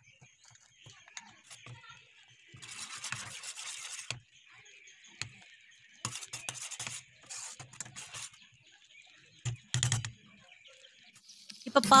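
Metal spoon stirring and scraping round a steel pot of milk thickening on the stove, in a few separate scrapes about a second long.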